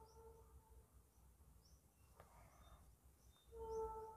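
Near silence: faint room tone, with a faint steady hum that fades out within the first second and returns louder near the end, and a few faint high chirps.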